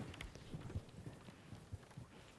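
Faint footsteps on a stage: soft, irregular thuds.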